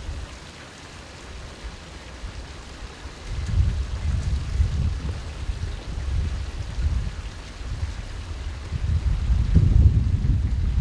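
Steady splashing of a fountain's water jet, with gusts of wind rumbling on the microphone from about three seconds in, strongest near the end.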